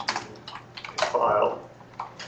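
Typing on a computer keyboard: a quick run of key clicks. A short burst of a person's voice about a second in is the loudest moment.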